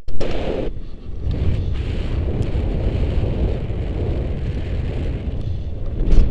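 Wind buffeting a handheld camera's microphone during a tandem paraglider flight: a steady low rumble that dips briefly about a second in.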